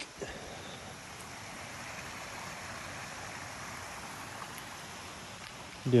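A creek running nearby: a steady, even rush of flowing water.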